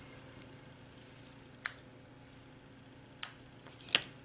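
A pair of scissors being handled and set down on a craft mat: three short, sharp clicks over a faint steady hum.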